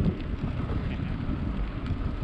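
Wind buffeting the microphone of a camera riding on a moving bicycle, a steady low rumble.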